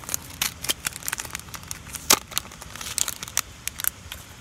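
Close handling noise: a string of irregular sharp clicks and crinkles, loudest about two seconds in, as hands work a soft-plastic stick bait and a small hook.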